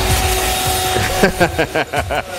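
Electric hand mixer running, its beaters churning graham cracker crumbs and melted butter in a stainless steel bowl: a steady motor whine over a rough, noisy churning.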